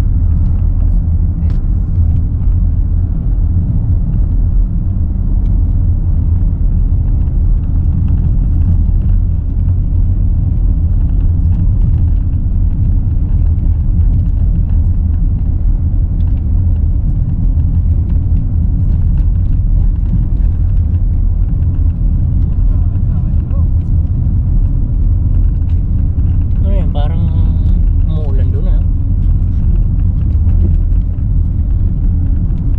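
Steady low rumble of a car's engine and tyre noise, heard from inside the cabin while driving.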